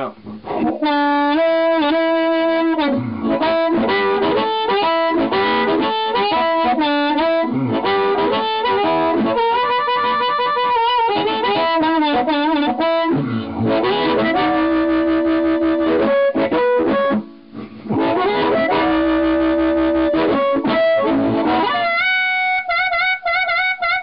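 Amplified blues harmonica played through a Turner 99 high-impedance dynamic microphone into a Fender Bassman amplifier. The playing has bent notes, a short break about seventeen seconds in, and fast warbling notes near the end.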